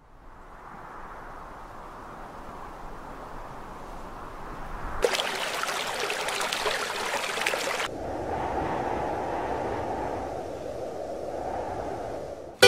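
Rushing river water fading in from silence. It is full and hissy for a few seconds in the middle, then sounds muffled.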